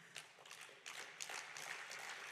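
Faint, scattered applause from a sparse audience in a large hall, thickening about a second in.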